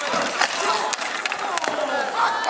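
Inline hockey skate wheels rolling and scraping on a hard rink surface, with several sharp stick clacks and players' voices calling out.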